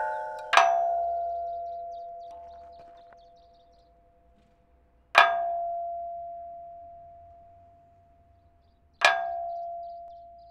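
Experimental ambient music made of struck metal: a clang about a second in, another about five seconds in and a third near the end, each ringing on in a slowly fading bell-like tone. A clang struck just before also rings on at the start.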